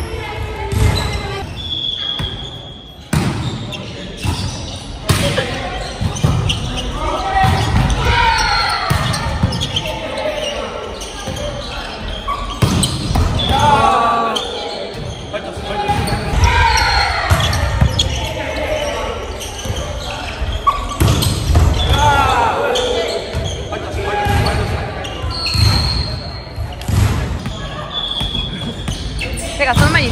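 Volleyball rallies in a gymnasium: repeated sharp hits of the ball on hands and on the hard court, echoing in the hall, with short high shoe squeaks on the floor. Players shout and call out during the play several times.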